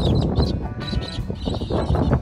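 Short high calls from a flock of galahs flying overhead, over a low rumble of wind on the microphone.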